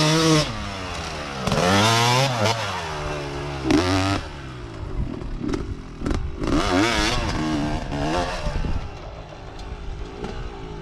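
Small dirt bike engine revving, its pitch rising and falling in a series of throttle bursts a second or two apart as the bike rides across the dirt.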